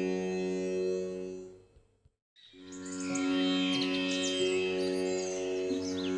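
Background instrumental music with a sustained, sitar-like drone fades out about a second and a half in, goes silent for a moment, then starts again with bird chirps layered over it.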